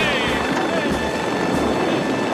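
Helicopter flying low over a stampeding cattle herd: steady rotor and engine noise blended with the dense rumble of the running herd.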